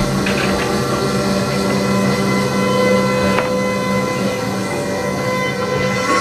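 Live experimental music: a steady drone of several held tones layered together, with a violin bowing over electronics.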